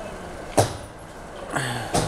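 A sharp knock or click about halfway through and another at the very end, over a steady low background noise, with a short hum from a man's voice just before the end.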